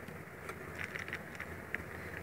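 Faint handling noise: a few light clicks and rustles as an open plastic jar of Guerlain Météorites powder pearls is picked up and moved.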